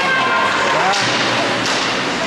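Ice hockey game: spectators' voices and calls over a steady rush of rink noise, with a sharp knock about a second in and another near the end as sticks and the puck hit the boards.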